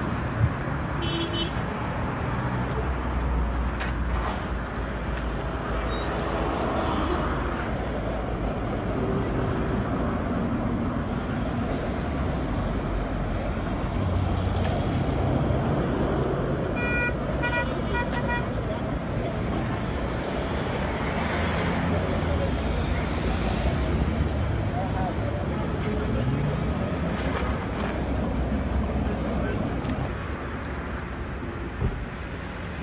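Steady street traffic, with vehicles passing on the road. A horn sounds several short beeps a little past the middle.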